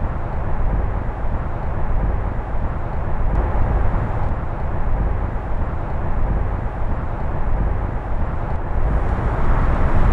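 Steady outdoor background noise with a heavy low rumble and no distinct events.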